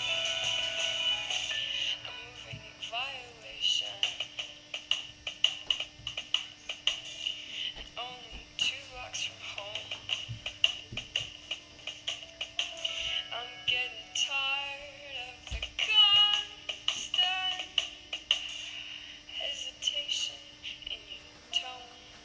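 Small speaker driven by an Arduino Wave Shield playing back an audio file from its SD card: music with singing, thin-sounding and short of bass, over a steady low hum.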